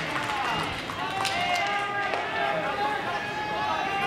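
Many voices calling and shouting at once across a baseball ground, with a couple of sharp clicks about a second in.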